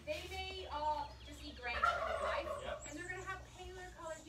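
A domestic turkey gobbling once, briefly, about two seconds in, over people talking.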